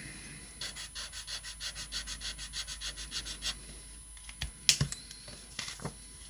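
Nuvo glitter marker nib scribbling back and forth on paper, quick scratchy strokes about five a second, then a single sharp click a little under five seconds in.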